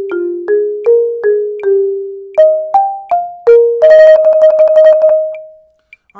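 Rosewood marimba played with two yarn mallets: a steady run of single notes stepping down a scale, then a few higher notes, then a roll on one note for about a second and a half. The roll ends the phrase and rings away.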